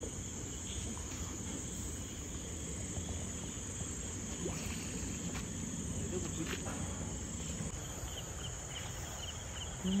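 Night insect chorus: crickets trilling in a steady high-pitched drone, over a low rumble of outdoor background noise, with a short run of repeated chirps near the end.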